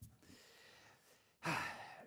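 A man sighing into a close microphone: an audible out-breath about one and a half seconds in, after a small click and a faint hiss.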